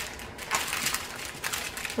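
Small plastic bags of diamond-painting drills crinkling and rustling as they are handled and spread out, with a few sharp clicks.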